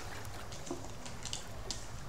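Tarot cards being handled and drawn: a few faint, short clicks and rustles over a low steady hum.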